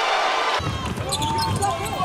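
Arena sound of a basketball game, starting abruptly about half a second in: a basketball being dribbled on a hardwood court, with crowd voices around it.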